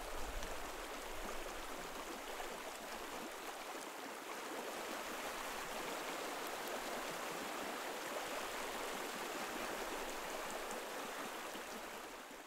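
Shallow creek water flowing and rippling over stones, a steady rushing that fades out at the very end.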